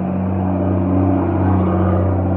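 A motor vehicle passing by: a steady engine rumble that swells slightly around the middle.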